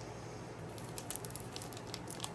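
Faint rustling and crinkling of a small plastic packet handled in the hands, with a few short crackles between about one and two seconds in, over a steady low room hum.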